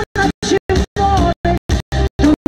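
A woman singing a pop song into a microphone over amplified backing music. The sound is chopped by short near-silent gaps about four times a second.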